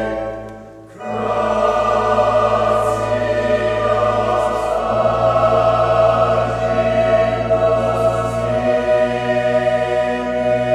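Large mixed choir singing sustained chords with instrumental accompaniment over steady low bass notes. The sound thins out briefly just before a second in, then the full ensemble comes back in and holds, with the bass shifting to new chords twice.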